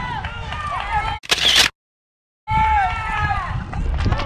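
People's voices, broken about a second in by a brief loud burst of rustling noise on the microphone, then cut to total silence for under a second before the voices resume.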